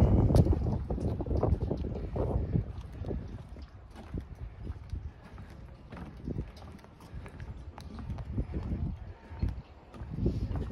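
Footsteps on wooden dock boards, a walking tread of short knocks, louder in the first few seconds.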